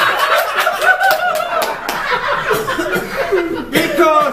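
Laughter from several people at once, the speaker laughing loudly among a small audience.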